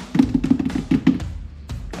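Background music with a drum beat.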